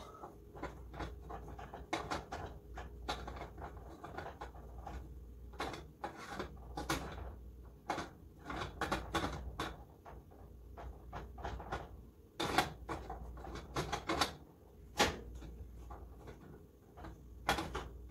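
A wooden spoon knocking and scraping against a metal pot while stirring a thick, stiff chocolate mixture that is not mixing well: irregular clicks and knocks, several a second, with a few louder strikes in the second half.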